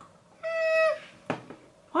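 A woman's held "mm" hum at one steady pitch, lasting about half a second, voicing doubt. A short click follows about a second later.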